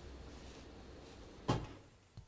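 Faint steady background noise, then a single short knock about one and a half seconds in, fading quickly.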